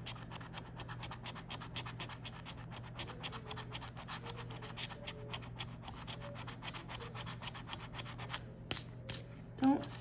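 A coin scratching the coating off a paper scratch-off lottery ticket: rapid short scrapes, many a second, with two sharper, louder scrapes near the end.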